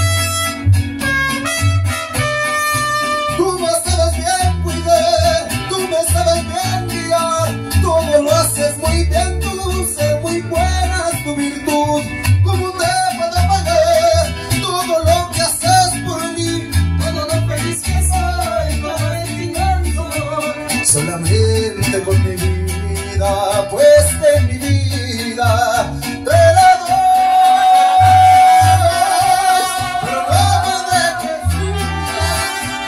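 Live mariachi band playing a song: a plucked bass keeps a steady beat under the strings, with a singer carrying the melody on a microphone.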